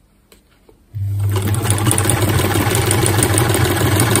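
Vintage Singer sewing machine running at a steady speed, stitching through folded paper; it starts about a second in.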